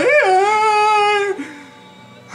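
A man's voice singing one long wordless high note that swoops up and settles at the start, holds steady, then breaks off about a second and a half in.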